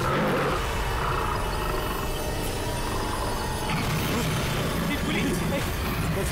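A tiger's deep, rumbling growl and roar, laid over background music.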